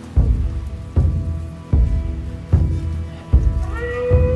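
Background film music: a deep, slow pulse beating about every 0.8 seconds under held high notes, with a rising tone coming in near the end.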